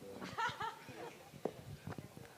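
Faint, off-microphone speech, a brief low-voiced exchange, with two soft clicks about one and a half and two seconds in.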